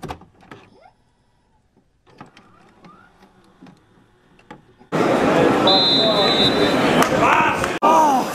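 Faint glitchy clicks and near silence, then from about five seconds in the open sound of a football ground: crowd voices and shouting, with a referee's whistle blown once for about a second to start the second half.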